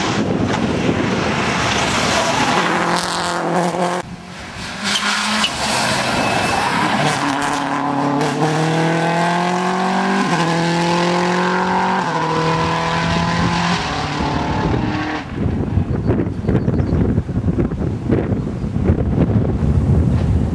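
Subaru Impreza WRC rally car's turbocharged flat-four engine at full throttle, revving up and changing gear several times as it accelerates away at speed, with a brief lift about four seconds in. From about fifteen seconds in the engine fades out and wind buffeting on the microphone is left.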